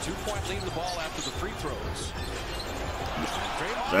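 Basketball dribbled on a hardwood court in an arena, heard through the game broadcast over a steady crowd hubbub, with faint short squeaks.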